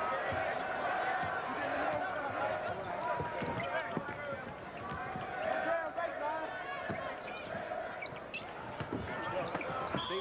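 A basketball dribbling and bouncing on the hardwood court, with sneakers squeaking in short high chirps, over the steady murmur of an arena crowd.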